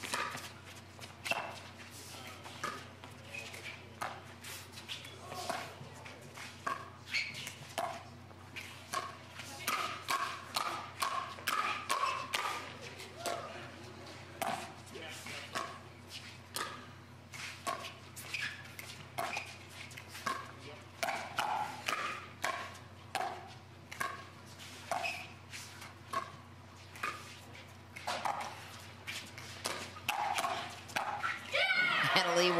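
Pickleball paddles striking a hard plastic ball back and forth in a long rally of mostly soft dinks at the net, a sharp pop about every half second to second. The exchange runs on unbroken for the whole stretch.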